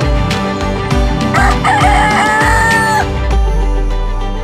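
A rooster crows once, about a second and a half long: a rough rising start, then a long held note. Background music with a steady beat runs under it.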